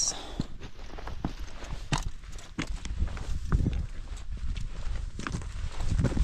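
Footsteps and hand-holds scrambling over loose summit rock: irregular knocks and scrapes of rock underfoot, over a low rumble of wind on the microphone.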